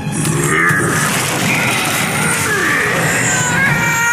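Cartoon soundtrack: a character's wordless vocal sounds, rising and falling in pitch, over background music.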